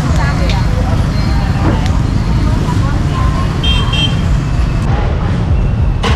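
Busy street ambience with a steady low rumble of passing motorbike traffic and voices talking in the background. There is a short high beep about two-thirds of the way through.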